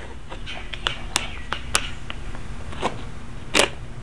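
Plastic deli-cup lid being handled and pried open: a scattered series of about seven sharp clicks and taps with light scraping, the loudest near the end.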